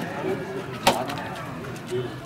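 A coconut cracked open on the ground in a puja ritual: one sharp, loud crack about a second in, over low murmuring.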